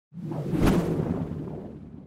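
Logo-intro sound effect: a whoosh that swells into a sharp hit about half a second in, followed by a low tail that fades away over the next two seconds.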